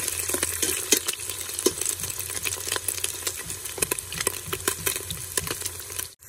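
A metal spoon stirring and scraping against a stainless steel pot, with frequent sharp clicks, while sliced onions and garlic sizzle in hot oil.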